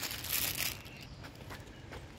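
Brief rustling and crinkling of a phone being handled as it is turned round, about half a second long, followed by faint outdoor background with a few small clicks.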